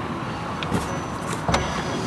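Steady street traffic rumble, with a faint knock and then a sharper thump about a second and a half in.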